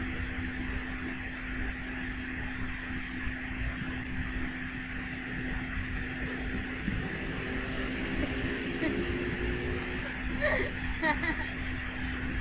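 Steady low background hum under an even noisy room background, with a few faint short high sounds near the end.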